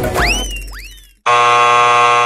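Game-show time-up buzzer: a loud, steady electronic buzz that starts abruptly about a second and a quarter in as the countdown runs out, ending the round. Before it, two or three rising whistle-like glides fade out.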